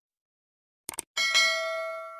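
Sound effects of a subscribe-button animation: a quick double mouse click just before a second in, then a notification bell struck twice close together, its ringing tones fading slowly.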